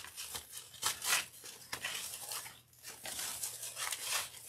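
Ribbons rustling and crinkling in irregular scratchy strokes as hands gather a stack of them and loop it over the pegs of a bow-making board, with a brief lull about two and a half seconds in.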